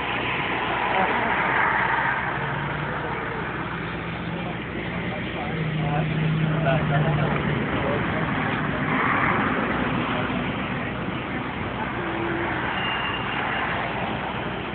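People talking as they walk past, over a steady background of vehicle noise with a low engine hum that grows stronger for a couple of seconds around the middle.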